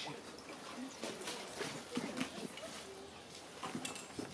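Shallow stream water splashing and sloshing as a person in waders works in it and hauls a plastic bucket out of the water, with short scattered splashes and faint voices underneath.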